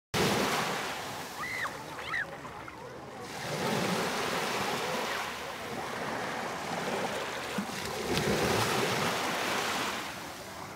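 Surf washing up onto a sandy beach, swelling and drawing back in waves, with two short high cries about two seconds in.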